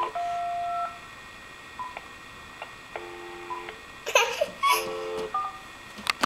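Telephone keypad tones as buttons are pressed on a phone handset: a string of short electronic beeps, each a held steady tone, some long, some brief. A short bit of toddler babbling comes in about four seconds in.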